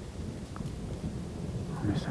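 Low, steady rumble of rolling thunder, with a faint click about half a second in.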